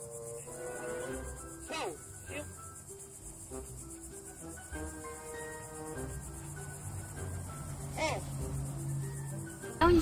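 A steady, high-pitched chorus of insects chirping outdoors, with faint soft music underneath and a few short falling squeaks.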